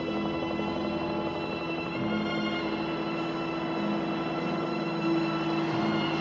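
Film soundtrack music: sustained held tones over a lower note that pulses on and off.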